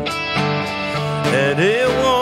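Live worship band playing a country-style song on electric guitars. Near the end a singer's voice slides up into a held note with vibrato.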